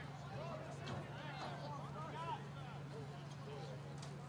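Faint, overlapping voices of players and spectators chattering and calling out around the football field, over a steady low hum.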